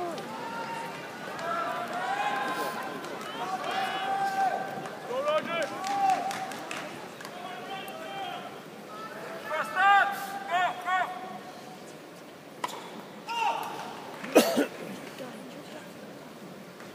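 Voices of spectators talking in an arena crowd, with no single clear speaker. A couple of sharp knocks come near the end.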